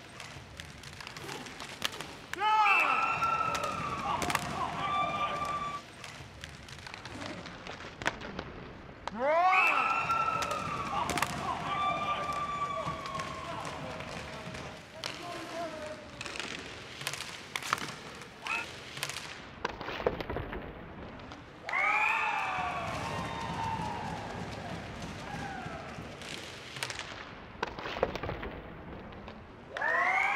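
Inline hockey game sound: sharp clacks of sticks, puck and boards throughout, with loud drawn-out calls from voices in the arena several times, the loudest about two and a half, nine and a half and twenty-two seconds in.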